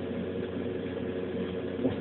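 Steady low hum with hiss, with no other event standing out.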